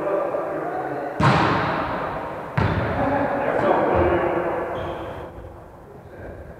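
A volleyball struck hard twice, about a second and a half apart, each sharp smack ringing in the large gym hall. Voices talk throughout.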